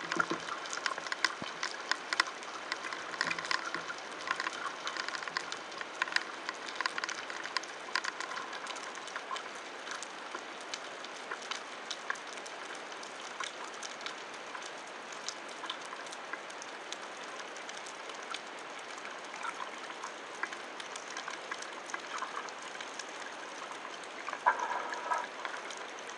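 Underwater ambience picked up by a camera in a waterproof housing on a speargun: a steady hiss dotted with many fine crackling clicks, with a short louder gurgling burst near the end as the camera nears the surface.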